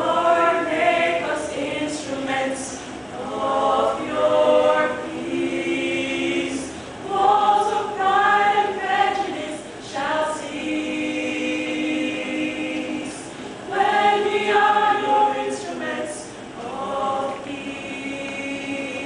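A small choir of young women singing a cappella, in phrases of a second or two with short breaks between them.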